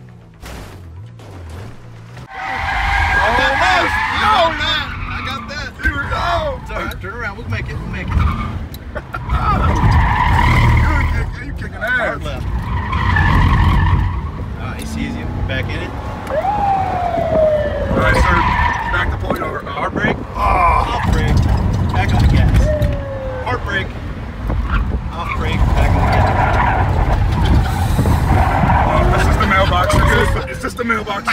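Tires of a Ford Crown Victoria police car squealing again and again as it is braked hard and cornered through a cone course, over engine and road rumble heard inside the cabin. The squeals come and go in bursts of a second or two, starting a couple of seconds in.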